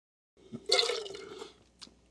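Wine spat into a stainless steel spit cup: one short liquid splash, under a second long, fading out.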